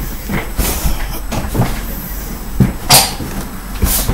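Handling noise from a person moving right next to the microphone: rustling with a few knocks and bumps, the two loudest a little before three seconds in and near the end.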